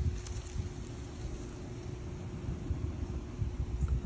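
Wind buffeting the microphone, a low uneven rumble, with a faint steady hum underneath.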